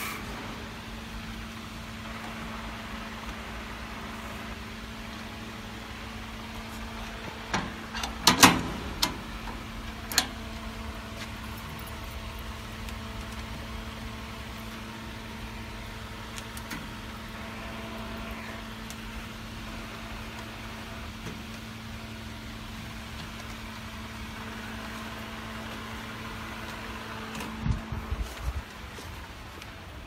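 Steady mechanical hum of packaging machinery, with a cluster of sharp metallic clicks and knocks about eight to ten seconds in as parts of the vertical form-fill-seal packing machine are handled, and a few more near the end.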